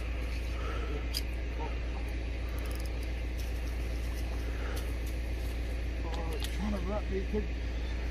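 Steady low background rumble throughout, with a few faint clicks and a few words of speech near the end.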